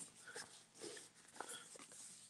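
Near silence, with a few faint, brief rustles of a plastic-wrapped inflatable baseball bat being handled.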